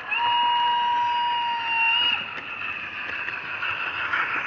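A single steady whistle-like tone, held for about two seconds and then cut off, from a sound-fitted model locomotive, over the constant whirring running noise of a model train's motor and wheels on the rails.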